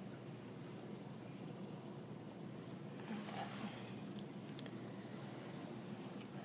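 Low steady room hum with a few faint clicks and soft wet handling sounds, from a scalpel and gloved fingers working the tissue of a preserved fetal pig in a metal tray.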